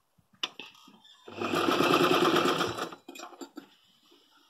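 Vintage electric sewing machine stitching a short run of rapid, even needle strokes lasting about a second and a half, starting and stopping, with a click shortly before it and a few softer clicks after.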